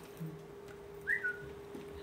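A steady faint hum with one short, falling whistle-like squeak about a second in.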